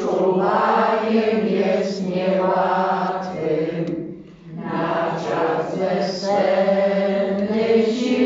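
Church congregation singing a hymn together, with a short break between lines about four seconds in.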